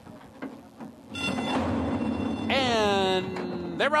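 Horse-race start: about a second in the starting-gate bell rings and the gates open with a loud clatter as the field breaks. Partway through, a long loud cry falls in pitch and then holds for over a second.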